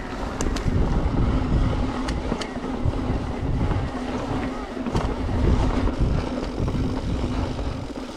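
Wind buffeting the microphone and tyres rolling over a gravel trail as a Specialized Turbo Levo e-mountain bike is ridden at speed, with scattered sharp clicks and rattles from stones and the bike.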